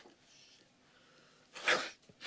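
A person blowing their nose hard into a tissue, with one short blow at the very start and one loud blow about one and a half seconds in.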